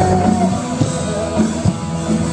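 Live rock band playing: electric guitars holding notes, with sharp drum hits.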